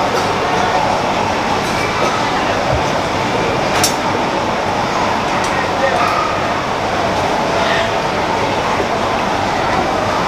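Steady din of a busy food stall: a constant background rumble mixed with indistinct chatter from the crowd, with a sharp clink about four seconds in and a few fainter clicks.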